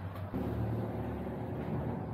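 A motor vehicle's engine running nearby on the street, a steady low hum that grows louder about a third of a second in.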